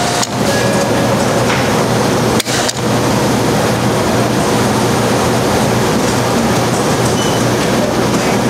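Self-serve soda fountain pouring a carbonated drink into a cup with a loud, steady rushing hiss, broken twice by short gaps in the first three seconds.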